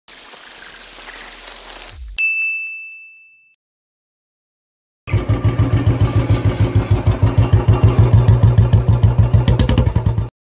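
A hiss for about two seconds, then a single bright ding that rings and fades. After a pause, a Royal Enfield Bullet 350's single-cylinder engine idles with a steady, even beat of about eight pulses a second.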